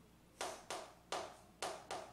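Chalk writing on a chalkboard: five sharp strokes about half a second apart, each a tap that trails off briefly.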